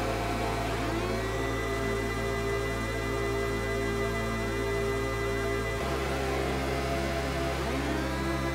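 Electronic music played through a club sound system in a DJ set: sustained synth bass notes under gliding synth sweeps and a steady high tone. The bass drops to a lower note about six seconds in.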